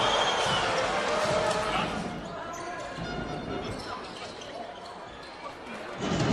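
Game sound of a basketball broadcast in an arena. Crowd voices and shouts die down over the first two seconds, under a basketball being dribbled on the hardwood court.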